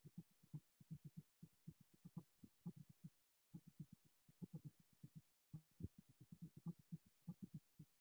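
Faint, quick, irregular low thumps of a chalkboard being wiped clean with rapid strokes.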